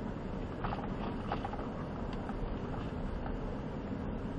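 Cabin noise of a Ford Raptor pickup crawling slowly over a rocky dirt trail: a steady low rumble of engine and tyres, with a few faint clicks and knocks.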